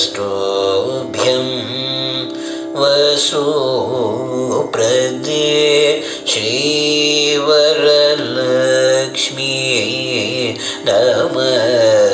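Male Carnatic vocalist singing without clear words, in long phrases whose pitch slides and oscillates ornamentally between notes, over a steady drone, in Raga Shree.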